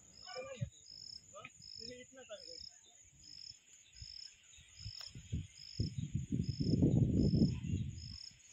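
Insects chirping in a steady rhythm, a short high chirp a little more than once a second, over a faint high insect hiss. Faint distant voices come early, and a louder rough rumble rises for about two seconds near the end.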